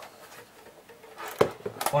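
Plastic food storage boxes handled on a kitchen worktop: one sharp knock about one and a half seconds in, then a few light clicks.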